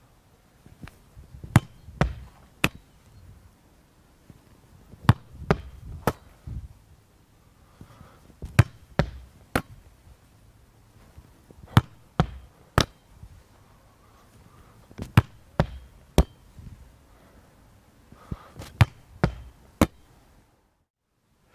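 Volleyball float serves against a wall, six in a row about every three and a half seconds: each is a cluster of two or three sharp smacks, the hand striking the ball and the ball hitting the wall and coming back.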